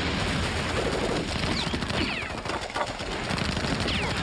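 Heavy gunfire from machine guns and rifles, shots overlapping in a continuous rattle, with a few short falling whines.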